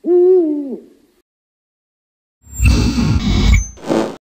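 A single owl hoot lasting under a second, dipping in pitch at its end and trailing off in a short echo. After a second of silence comes a loud, noisy burst that lasts over a second.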